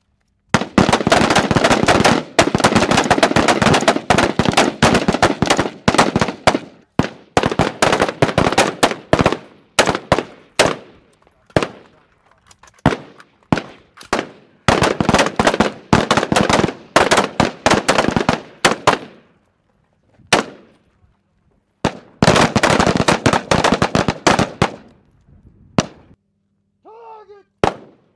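Several rifles firing together along a firing line. Rapid, overlapping shots come in long strings separated by short pauses, with scattered single shots in between.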